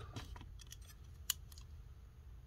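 Faint clicks and light knocks of hands handling a trading card and picking up a metal hand tally counter, with one sharper click a little past halfway.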